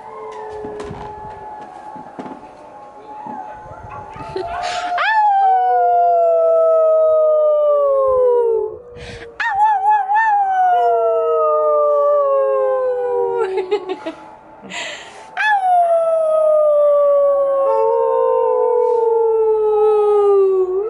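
Dog howling: three long howls, each sliding steadily down in pitch and lasting about three to five seconds, the first starting about five seconds in.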